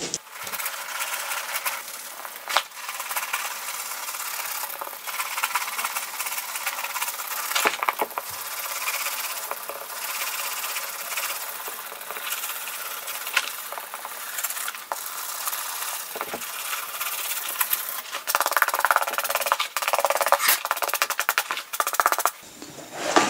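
Suede brush scrubbing the suede leather of a cowboy boot in quick back-and-forth strokes, a continuous scratchy rasp. The strokes get faster and louder near the end.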